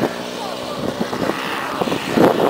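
A motor vehicle engine running steadily, with men's voices talking over it.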